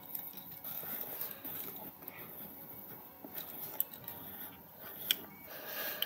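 Quiet room with a few faint clicks and small handling noises as a pot of loose mineral setting powder is opened slowly.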